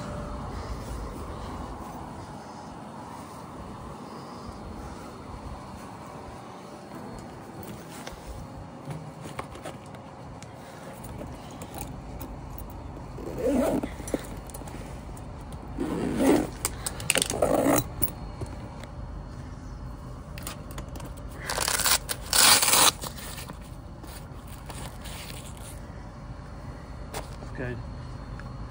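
Daikin split-system outdoor unit running steadily, heaps quieter now that it has been repaired. From about halfway through, a fabric tool backpack is handled and set down on stone steps: several short, loud bursts of handling noise over the steady running sound.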